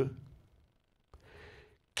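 A man's word trails off, then after a moment of near silence comes a short, faint breath before he speaks again.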